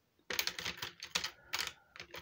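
Markers and crayons clicking and rattling against each other and a plastic storage box as a hand rummages through it to pick one out: a quick, irregular run of sharp clicks.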